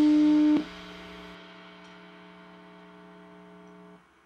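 An electric guitar's held note ringing through the amplifier after the rock song ends, stopped sharply about half a second in. A much quieter steady amplifier hum with several tones lingers, fading slightly, until the sound cuts off.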